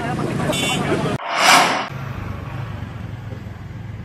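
Outdoor street noise from road traffic: crowd voices mixed with traffic for about a second, then a short rising-and-falling whoosh of a vehicle passing close, then a steady low engine hum of traffic.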